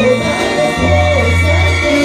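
Live banda sinaloense music: a brass band with tuba bass, clarinets, trumpets and guitars playing together with singing voices, a high note held through and steady low tuba notes underneath.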